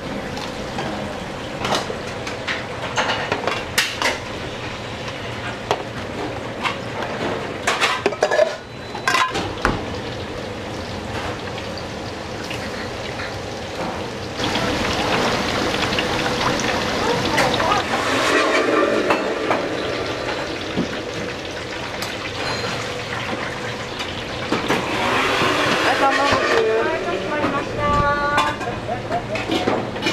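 Kitchen work at a gas range: metal lids and small donburi pans clinking and knocking. About halfway through, tempura goes into a deep fryer and the oil sizzles steadily.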